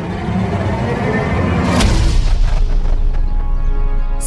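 Dramatic background score building up, with a whoosh and a deep booming hit a little under two seconds in, whose low rumble carries on afterward.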